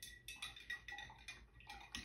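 Faint, irregular light ticks and clinks of a paintbrush dabbing and mixing acrylic paint on a palette plate.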